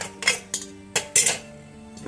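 About five sharp metal clinks at uneven intervals, metal vessels knocking together, over background music with steady held notes.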